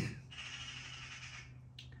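Eurasian magpie chattering: a harsh call lasting about a second, then a short second call near the end.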